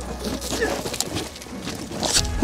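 Recorded audio of a man's fall on the loose volcanic scree of a steep descent: scattered scrapes and clatters on the gravel, mixed with short, broken vocal cries.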